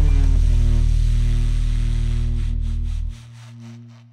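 Tenor saxophone holding a long low final note at the end of a jazz ballad, over a backing track. The backing's bass stops about three seconds in, and the sax note carries on alone and fades away.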